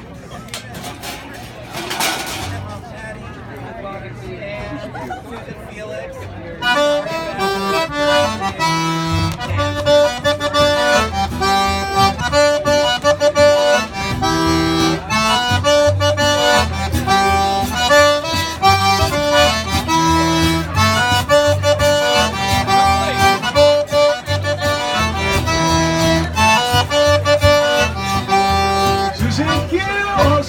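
Zydeco band kicks into a tune about six seconds in: a button accordion playing the melody over a washboard scraping a quick, even rhythm, with guitar and a low bass line underneath.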